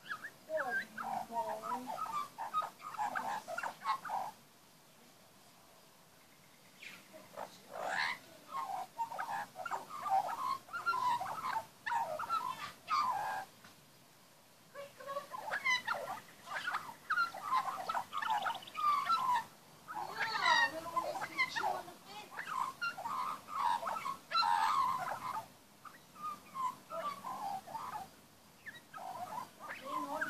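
Young Australian magpie singing a long, varied warble of quick gliding chirps and twitters, in several runs broken by short pauses.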